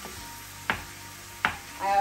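Wooden spatula knocking twice against a stainless steel skillet while breaking up ground beef, about three-quarters of a second apart, over the faint sizzle of the browning meat.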